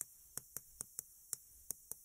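Chalk writing on a chalkboard: faint, irregular ticks as the strokes of the chalk tap against the board, about eight in two seconds.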